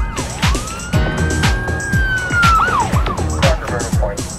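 A single police-siren wail, most likely a sound effect: it rises for about a second, holds, then warbles and falls away about three seconds in. It plays over electronic music with a steady kick-drum beat.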